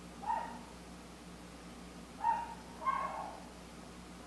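Three short, high-pitched animal cries, one near the start and two close together past the halfway point, over a faint steady background hum.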